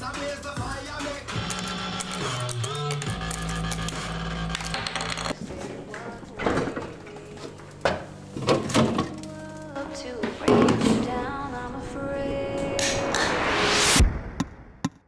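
Dubstep remix intro: a vocal line over a low sustained bass that drops out about five seconds in, with scattered percussive hits. A rising noise sweep builds over the last two seconds and cuts off sharply.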